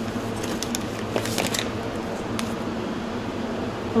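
Soft plastic mayonnaise pouches rustling and crinkling as a hand picks through them in a cardboard box: a cluster of rustles in the first second and a half, one more a little later. Under it, a steady hum of fans or air conditioning.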